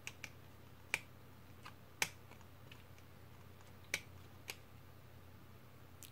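A small screwdriver turning a screw in a plastic toy figure: irregular sharp little clicks of metal on plastic, about half a dozen, the louder ones about one, two and four seconds in.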